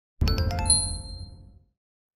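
Short logo sting: a low hit under a quick run of bright chime notes that ring on and fade out within about a second and a half.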